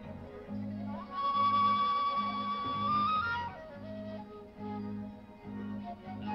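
Live rock band music led by a flute. The flute slides up to one long high note about a second in, holds it for about two seconds, then bends up and falls away into lower notes, over a steadily pulsing bass line.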